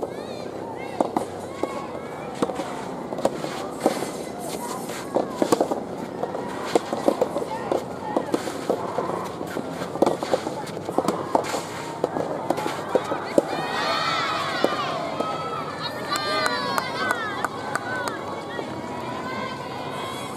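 Soft tennis rubber balls popping off rackets and bouncing during a rally, as many sharp irregular clicks. From about two-thirds of the way through come clusters of high-pitched shouts and calls from players and supporters.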